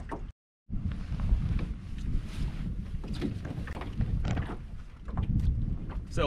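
Wind buffeting the microphone as a low rumble, with scattered light knocks from the boat. Near the start the audio cuts out completely for a fraction of a second, then comes back.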